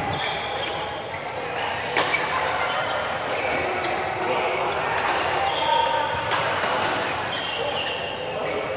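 Badminton rally: rackets hitting the shuttlecock several times, a second or two apart, the sharpest hit about two seconds in. Shoes squeak on the court between shots, and the hits echo in a large hall.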